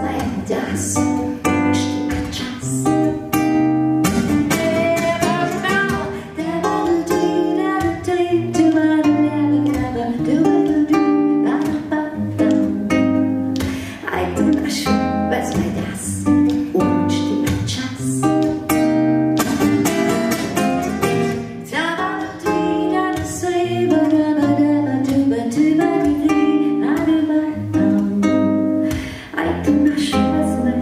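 A woman singing a slow song live to a plucked acoustic guitar accompaniment.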